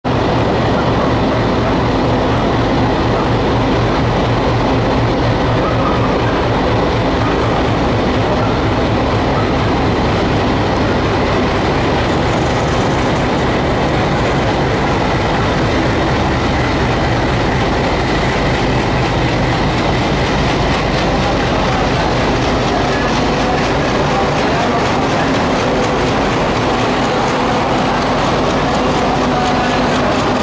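WDM3D diesel-electric locomotive's ALCO-type 16-cylinder diesel engine running loud and steady as it pulls out and passes close by, its low engine note strongest in the first dozen seconds. Near the end the LHB passenger coaches roll past, wheels clicking over the rail joints.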